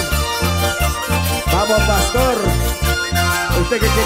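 Live Andean carnival band music: trumpets and saxophone playing the melody over electric guitars and mandolin, with a steady pulsing bass beat.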